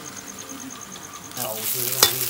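An insect chirps in quick, even high pulses, about seven a second, over a quiet background. About 1.4 s in, this gives way to the sizzle of dried red chilies frying in oil in a wok.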